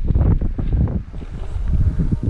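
Wind buffeting the microphone: a loud, gusty low rumble that eases briefly about a second in.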